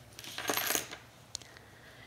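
Small metal bag hardware being handled on a tabletop: a brief rustle and clink, then a single light click a little over a second in.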